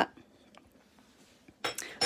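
A quiet stretch with a few faint ticks, then a brief metallic clink of kitchenware near the end.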